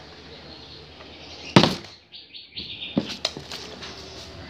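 Plastic water bottle landing on a table with one sharp thud about one and a half seconds in, followed a second later by several light knocks and clatter as it is handled again. A few short bird chirps come between.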